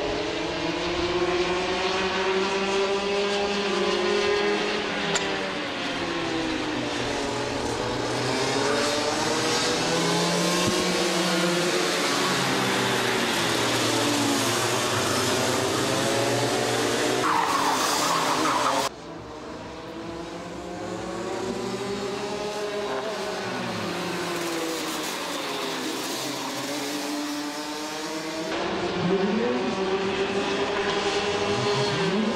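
Racing kart engines at high revs, their pitch rising and falling over and over as the karts accelerate and lift off through the corners. A brief tyre squeal comes about 17 seconds in, and the sound drops suddenly in level about 19 seconds in before building again.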